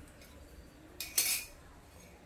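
A short clink and scrape of a metal spoon against a glass about a second in, over a quiet background.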